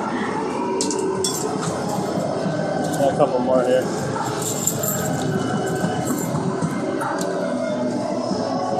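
Busy arcade din: steady background crowd chatter mixed with game-machine music and electronic sounds, with scattered light clicks and a brief louder warbling burst about three seconds in.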